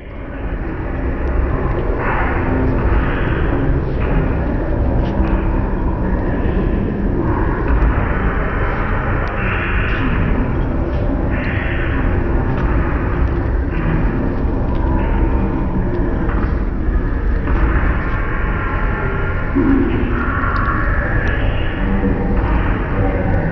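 Layered ambient soundscape built from field recordings: a steady low rumble under a dense bed of noise, with patches of brighter mid-range sound fading in and out every few seconds. It starts abruptly out of silence.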